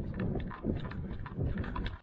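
A batsman's running footsteps on an artificial-turf cricket pitch, heard from his helmet camera: a quick series of dull thuds, one per stride, that cuts off abruptly at the end.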